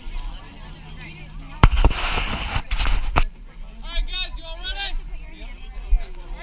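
A quick cluster of sharp pops or knocks with a brief rush of noise between them, about one and a half to three seconds in, with voices in the background afterwards.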